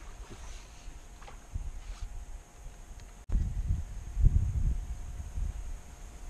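Wind buffeting the microphone: a low rumble that jumps louder about three seconds in, with a few faint clicks.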